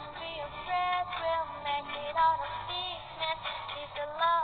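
A woman singing a melody over backing music, with held notes that waver in pitch. The sound is thin, with its top end cut off.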